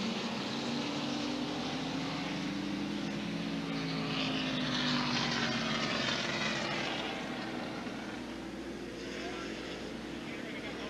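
A pack of NASCAR Winston Cup stock cars' V8 engines running at low caution-lap speed behind the pace car, a steady engine drone with wavering pitch. It swells to its loudest about halfway through as the cars come by and eases off toward the end.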